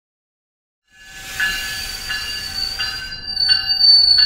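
GO Transit commuter train pulling into a station platform, its warning bell ringing about three strikes every two seconds over a steady high-pitched squeal that grows louder near the end. The sound starts about a second in.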